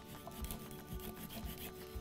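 A handheld vegetable peeler scraping the skin off a raw carrot in faint, repeated strokes.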